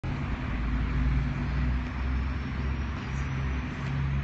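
Steady low rumble of street traffic, with no distinct events.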